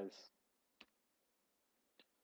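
A single short keyboard click about a second in, the Enter key being pressed; otherwise near silence.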